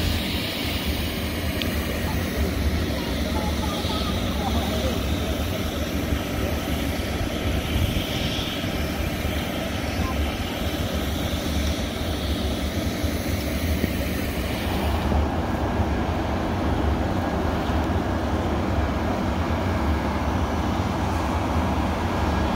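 Fan-type snowmaking gun running: a steady rushing noise with a deep rumble beneath. About fifteen seconds in the highest hiss drops away and the sound shifts.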